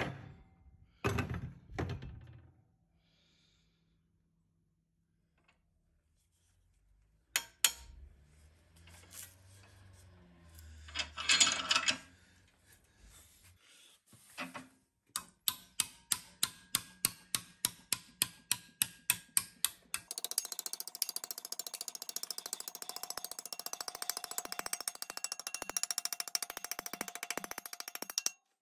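Hammer strikes on a strip of 2 mm sheet steel held in a vise-mounted steel-angle folding tool, bending it over: a run of evenly spaced metallic taps about three a second, then a fast, dense run of lighter taps for the last several seconds. Before that come a few clinks and a short scraping noise.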